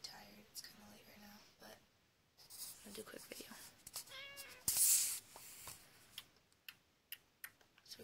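Rustling and clicking handling noise as a hand-held camera is moved over bedding, with the loudest rustle about five seconds in. Just before it, a short high-pitched meow-like call rises and falls.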